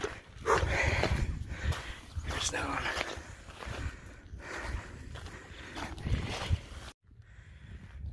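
A hiker's footsteps on a rocky trail and heavy breathing on a steep uphill climb, with a low wind rumble on the microphone. The sound drops out suddenly to near silence about a second before the end.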